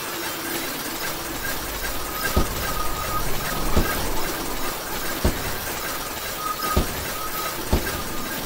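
Ice cracking: a steady crackling hiss with a deep, sharp crack about every second and a half.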